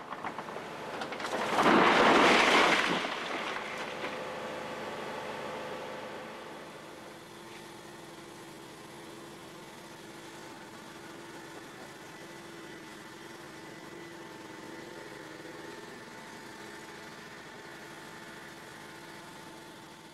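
A vehicle engine idling steadily, with a loud rushing noise that swells about two seconds in and dies away over a few seconds.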